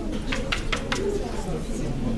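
Low, indistinct murmur of voices in the billiard room, with a few short hissing sounds in the first second.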